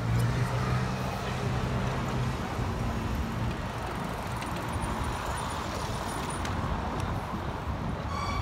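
City street traffic: cars and motor scooters driving along a cobbled avenue, with a low engine hum through the first three seconds or so that then fades into the steady traffic noise.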